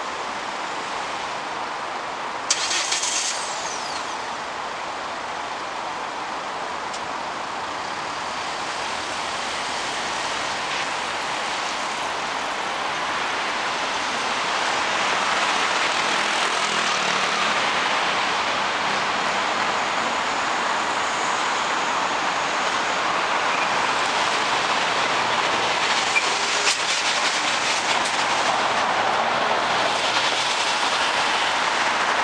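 Dense city road traffic: a steady wash of car and truck engines and tyre noise that grows louder about halfway through as the queued cars move off on the green. A short loud hiss about two and a half seconds in.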